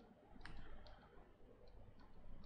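Faint, scattered clicks and taps of a stylus on a tablet as it writes, the clearest about half a second in, over quiet room tone.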